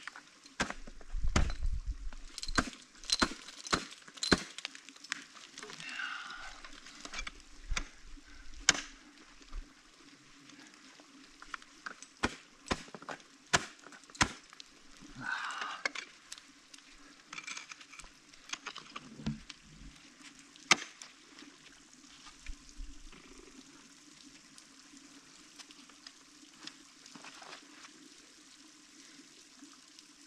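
Ice tools and crampons striking the ice of a frozen waterfall: sharp, irregular hits, several in quick succession in the first few seconds, then single hits spaced out, with short scraping smears between them.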